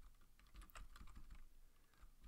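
Faint computer keyboard keystrokes, a scattered handful of light taps.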